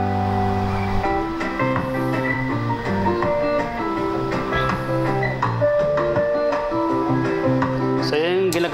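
Instrumental music played from a USB drive on a karaoke player, sent through a small mixer and out of the speakers as a sound test. The subwoofer is not yet working, so it comes from the main speakers alone, at a steady level with held notes over a bass line.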